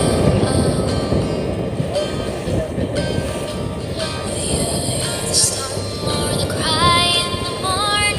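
Music with a stepping melody, over a steady noisy rumble from the boat running on open water.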